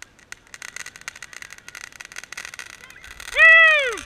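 A crackling ground-fountain firework: rapid, irregular pops and sizzle. About three seconds in, a person gives a loud, high 'whoo' cheer that rises and then falls in pitch.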